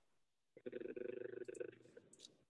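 A person's quiet, held voice sound, one steady pitched note. It begins about half a second in and lasts about a second, sounding thin as if heard over a call line.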